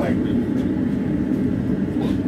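Gas forge burner running, a steady low-pitched rush of flame.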